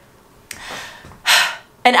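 A woman's breath, drawn audibly while she is nervous: a soft breath about half a second in, then a louder, short one just past a second in.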